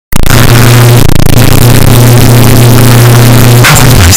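Deliberately blown-out, bass-boosted audio clipped to full level: a steady low bass drone with harsh distortion across the whole range, starting abruptly and breaking up near the end.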